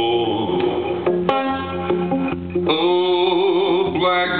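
Live music: a guitar played with a man singing.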